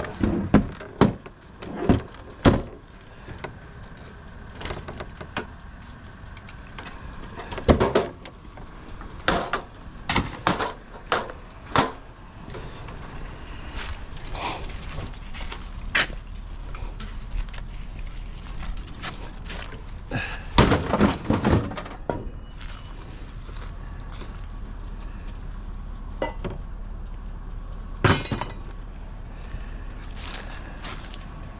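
Scattered knocks and clatters of hard scrap items, such as electronics and metal, being picked up, handled and dropped onto a loaded utility trailer. The impacts are irregular, with a quick cluster of several about twenty-one seconds in and a single sharp one near the end.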